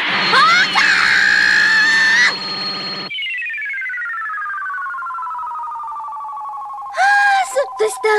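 Anime electric-shock sound effect: a loud crackling buzz with a voice yelling over it for about three seconds, cutting off abruptly. It is followed by a long whistle-like tone that slowly falls in pitch and then holds steady.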